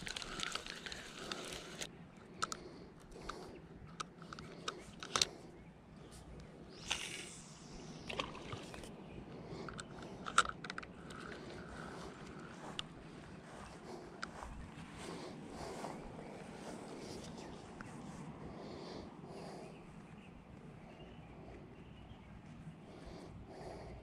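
Fishing tackle being handled: a spinning reel wound in the first couple of seconds, then a few scattered clicks and knocks from the reel and rod over the next ten seconds or so, giving way to a faint, steady outdoor background.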